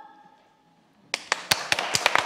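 The last sung chord of a women's a cappella vocal quartet fades away in the hall reverberation. After a brief silence, audience applause starts about a second in: a few separate claps at first, quickly growing denser.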